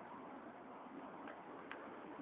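Faint, steady street background noise with two faint short ticks in the second half.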